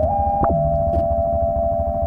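Abstract electronic music: several held synthesizer sine tones stacked over a low pulsing throb. One tone glides upward at the start, and about a quarter of the way in a short tone sweeps sharply down and settles low.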